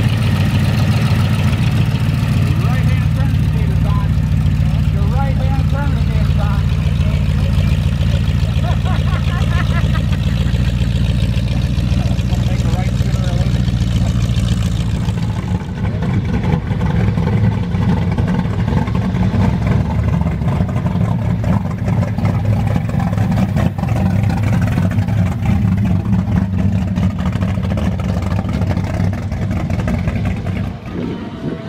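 Hot rod engines running at low speed as the cars drive slowly past, with people talking in the background. About halfway through the sound cuts to another car, whose exhaust pulses more unevenly.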